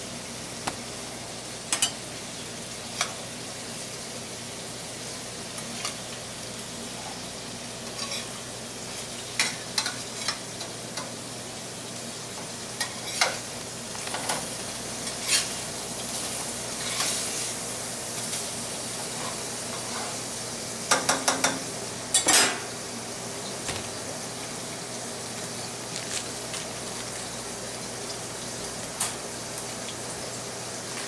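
Hamburger patties sizzling in a stainless steel sauté pan, with scattered clinks and scrapes of a metal utensil against the pan as they are worked; a quick run of clatters about two-thirds through is the loudest.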